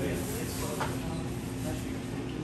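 Restaurant room tone: a steady low hum with faint voices in the background.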